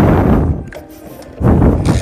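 A Rusi DL150's 150cc pushrod single-cylinder engine being started: two loud short bursts about a second and a half apart, the second catching into a running engine. The owner says it has grown a little noisy, with a light ticking, after seven years.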